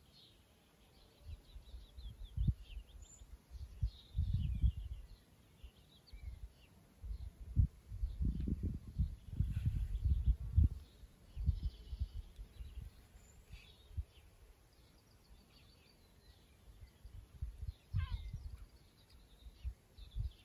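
Wind gusting on the microphone, a low rumble coming and going in uneven bursts with a lull in the middle, over faint bird chirps.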